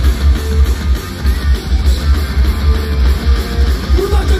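Live rock band playing loud through a festival PA: electric guitar over drum kit and a heavy, pulsing bass.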